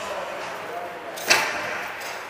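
A single sharp crack of a hockey puck strike about a second in, the loudest sound here, echoing through the ice rink over the steady hubbub of practice.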